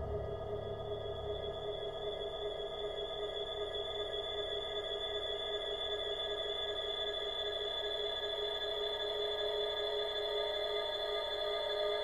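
Dark-ambient drone music built from electronically processed gong tones: several steady tones held without a break, over a low rumble that fades away in the first couple of seconds. One of the middle tones swells near the end.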